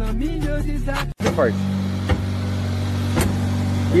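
Music with a beat for about the first second, then after a sudden cut a car engine idling with a steady low drone. Two light clicks sound over the idle.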